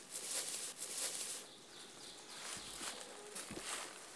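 Soft rustling and handling of cloth and fur as a squirrel is held, over a faint woodland background hiss, with a couple of soft bumps in the second half.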